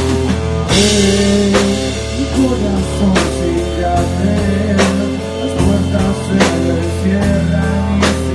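Rock band playing live: electric guitar and bass holding sustained chords over a drum kit, with cymbal crashes recurring about every second and a half.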